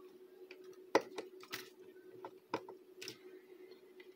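Small scattered clicks and taps of wires and connector leads being handled and pushed into a small circuit board's terminals, the sharpest about a second in, over a faint steady hum.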